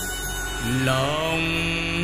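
A song with instrumental backing; about half a second in, a male voice starts singing, sliding up into a long held note with vibrato.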